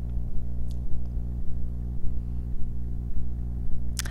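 Steady low electrical hum with a stack of overtones, the mains buzz of the room's microphone and sound system, with a faint regular tick about three times a second.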